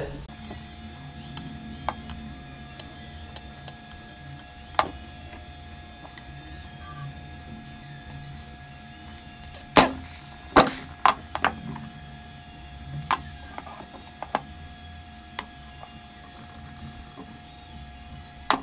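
Small metal and plastic parts of a microwave turntable motor's gearbox being handled and set down on a wooden board: scattered light clicks and taps, with a cluster of sharper knocks about ten seconds in. A faint steady tone runs underneath.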